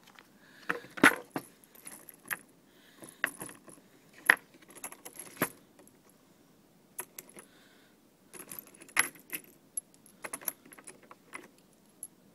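Irregular metallic clicks and clinks in clusters, the sharpest about a second in, from brass cartridges and a revolver being handled between loads of ammunition.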